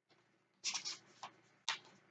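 Paper rustling as the pages of a paperback book are flipped: three short rustles, the first and longest a little over half a second in.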